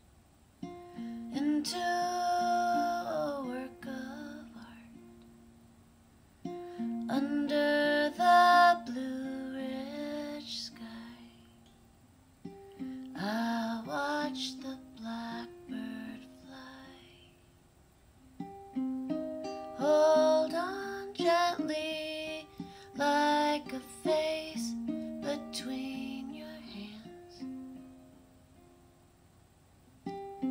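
An acoustic plucked string instrument plays an instrumental passage between sung verses. It comes in four phrases of a few notes each, and each phrase fades away before the next begins.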